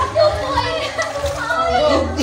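Voices of people and children at a swimming pool, with music playing in the background.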